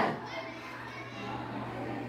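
A classroom of children murmuring and chattering quietly between words read aloud in unison, over a low steady hum.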